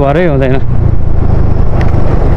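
Motor scooter riding at low speed: a steady low rumble of its small engine and road noise, with wind buffeting the microphone. A voice speaks briefly at the very start.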